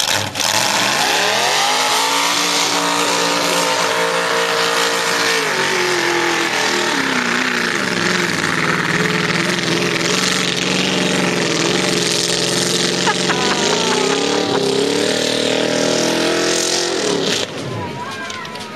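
Lifted Jeep's engine revving hard as it churns through a mud pit on spinning mud tires, under a heavy noise of churning tires and mud. The revs climb just after the start, hold high, drop and run lower through the middle, then climb again and fall near the end.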